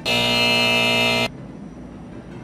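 Game-show style wrong-answer buzzer sound effect: one steady, harsh buzz lasting just over a second that cuts off suddenly, marking a fail.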